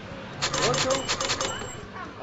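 Cash register sound effect laid over the scene: a rapid run of clacks for about a second, then a short ring.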